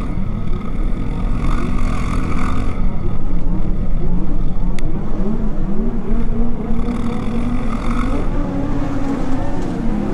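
Motorcycle engine running from the rider's position in slow city traffic, its pitch rising and falling with the throttle, over a steady low rumble of wind and road noise.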